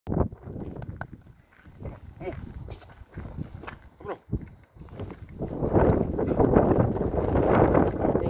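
Footsteps and a dog's paws crunching on loose gravel, then from about five seconds in a loud, rushing noise of wind buffeting the microphone.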